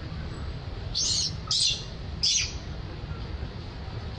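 Infant long-tailed macaque squealing: three short, high-pitched cries in quick succession.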